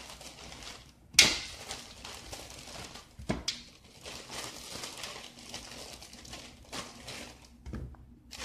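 Slices of Texas toast being set down one after another on a metal baking sheet: a sharp clack about a second in and another a little after three seconds, with soft rustling and light knocks between.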